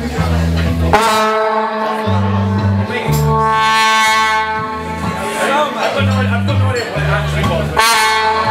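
Live rock band playing, with a brass horn section over electric bass and drums: a long held brass note comes in about a second in and holds for about four seconds, and another starts near the end, over a repeating bass line.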